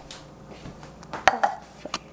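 Kitchenware being handled on a tiled counter: a cluster of sharp knocks and clinks about a second in, one with a brief ring, and another click near the end, as a plastic cup is set down beside a stainless steel milk frother.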